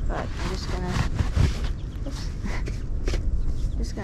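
A few sharp clicks and rustles of a camera with a long lens being handled and adjusted on a ground pod, over a steady low rumble, with a few muttered words.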